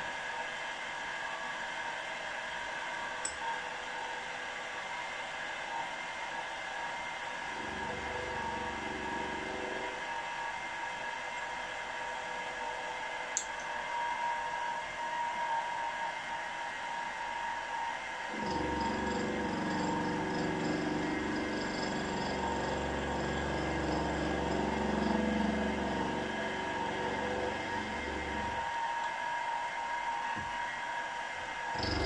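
Milling machine spindle running with a steady whine while an end mill cuts a flat on a small brass part. A lower, rougher cutting sound joins in briefly about 8 s in and again from about 18 s until just before the end.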